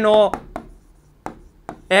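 The tail of a man's spoken word, then a few short sharp taps of a pen on an interactive display screen as letters are written, spread over about a second.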